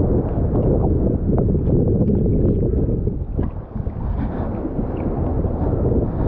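Seawater sloshing and lapping against an action camera held right at the water's surface by a swimmer: a steady, low churning rumble with small splashes.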